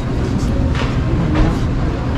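Steady low rumble of background noise inside a large warehouse store.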